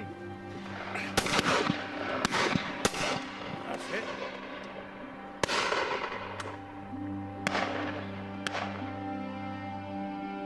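Shotgun shots: about six reports, some in quick pairs, each trailing off in an echo, over background music.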